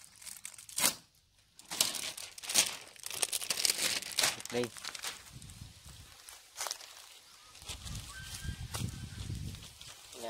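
Thin plastic wrapping crinkling and tearing in a run of sharp crackles as it is pulled off a new wire grill rack, with a low rumble in the last couple of seconds.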